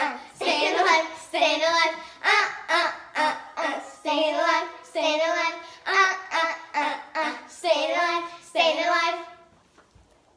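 Two young girls chanting a softball cheer together in a sing-song rhythm of short accented syllables. The chant stops about half a second before the end.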